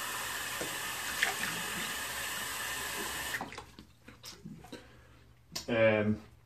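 Tap running steadily into a sink, then shut off abruptly about three and a half seconds in, followed by a few light knocks.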